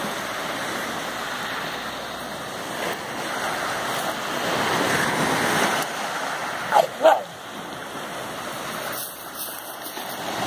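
Small waves washing onto a sand-and-shingle beach in a steady surf wash. About seven seconds in, a dog barks twice in quick succession.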